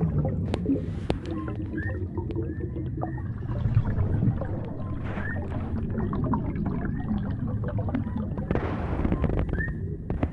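Deep-sea ambience sound effect: a steady low underwater rumble with gurgling, a few short clicks, and short high chirps that come every second or two.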